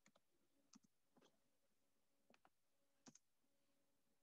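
Near silence broken by faint, sharp clicks: about five small groups scattered through the stretch, several of them quick pairs a tenth of a second apart.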